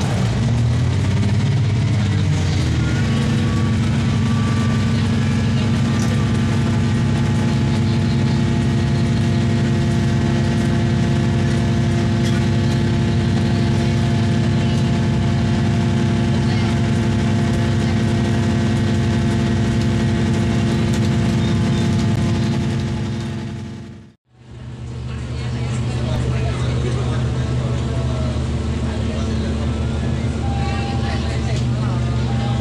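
Cummins NT855-5R diesel engine of a KRD MCW 302 diesel railcar pulling the moving train, heard from inside the passenger cabin as a loud, steady hum with several steady tones. Its pitch rises over the first two seconds, then holds. About three-quarters through, the sound briefly fades out and back in.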